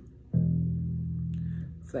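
Electric bass guitar playing one plucked, sustained low note, the E that is the second degree of a D melodic minor scale. It starts about a third of a second in and dies away shortly before the end.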